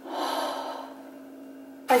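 A woman's long breath out, a sigh-like exhale lasting about a second that fades away, over a steady low hum. She starts speaking just before the end.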